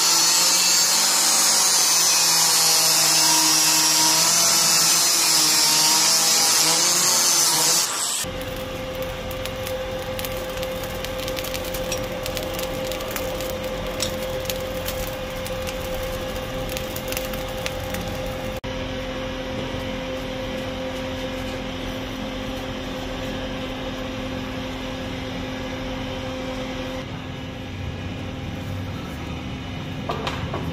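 Angle grinder cutting through a steel bearing ring, a loud high grinding that stops suddenly about eight seconds in. After that, a forge fire burning, quieter and even, with a steady hum underneath.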